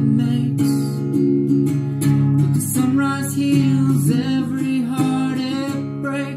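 Olympia acoustic guitar strummed in a steady down-up chord pattern, capoed at the fifth fret in half-step-down tuning, with a man's voice singing over it in places.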